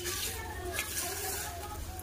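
Wet mud plaster being smoothed by hand over a clay chulha, a steady wet rubbing sound.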